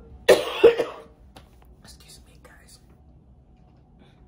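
A woman coughing, two sharp coughs about a third of a second apart near the start, followed by a few faint small sounds.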